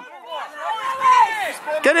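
Shouting voices at a rugby match: a call about halfway through, then a man starting to shout "Get in there" at the very end.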